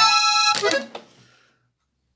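Hohner Compadre three-row diatonic button accordion, tuned in E, sounding a short held chord, then a briefer second stroke, dying away to silence about a second and a half in.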